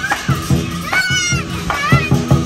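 Lion dance drumming: a big drum beaten in a steady, quick rhythm of about four strokes a second, with children's high shouts and squeals over it.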